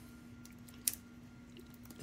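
Quiet handling of a laptop LCD panel and its display cable connector: a couple of small plastic clicks, the sharpest a little under a second in, as the connector is lined up.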